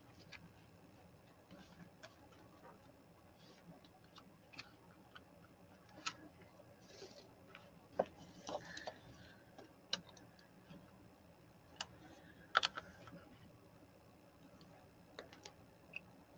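Quiet handling of paper and a hand-sewn book signature: scattered light clicks and taps, the sharpest about eight and twelve and a half seconds in.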